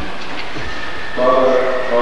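Hushed church with steady tape hiss just after the organ stops, then about a second in a priest's voice begins a prayer and the level rises.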